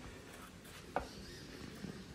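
Trigger spray bottle misting houseplants: a few faint short sprays, with a sharper click about a second in.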